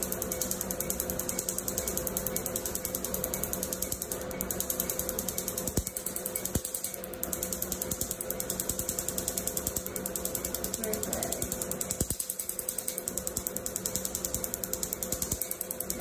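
Pen-style tattoo machine running as its needle works into the skin: a steady motor buzz with a fast, even clicking.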